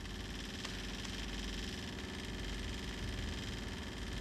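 Steady hiss over a low hum.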